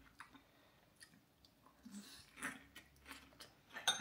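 Faint chewing of a mouthful of lettuce and cucumber salad: soft crunches and wet mouth sounds.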